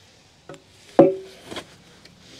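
A heavy metal tractor gear cover set down on pavement: a light tap, then about a second in one sharp clank that rings briefly.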